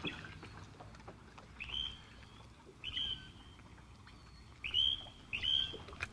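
A bird calling four times in the open air, each call a short high note that sweeps up and then holds, the last two close together.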